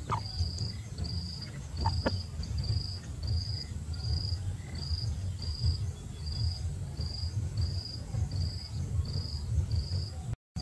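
An insect chirping in a steady rhythm, about three short high-pitched chirps every two seconds, over a low rumble, with a couple of faint clicks near the start.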